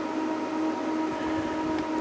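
A running HP 8568A spectrum analyzer gives a steady machine hum: one even-pitched tone with overtones over a faint hiss, unchanged throughout.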